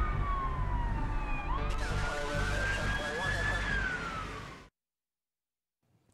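Police siren sound effect over a music bed with a heavy low beat. The siren tone falls in pitch, then rises and holds before falling again, and everything cuts off suddenly about four and a half seconds in.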